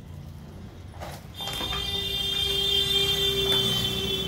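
A loud, steady, shrill tone starts about a second and a half in and holds without a break, with a lower tone sounding under it.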